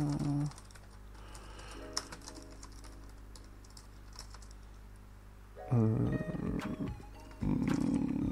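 Typing on a computer keyboard, scattered key clicks, over background music that drops low for most of the middle and comes back louder near the end.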